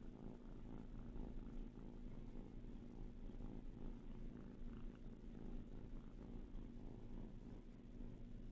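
A kitten purring, a faint steady low rumble, with light scuffling of small paws on a fluffy blanket.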